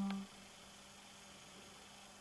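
A woman's drawn-out word trails off in the first instant, then near silence: only the faint steady hiss of a small room.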